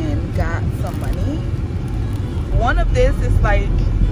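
Steady low rumble of a car heard from inside the cabin, with a person's voice talking over it in snatches, louder from about two and a half seconds in.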